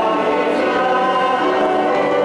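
Church choir singing, with long held notes.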